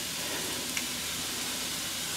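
Water and spicy sauce sizzling in a hot wok, a steady even hiss.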